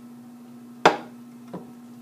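A slotted spoon knocking against the rim of a nonstick frying pan while stirring chicken and vegetables: one sharp knock a little under a second in, and a softer one about half a second later.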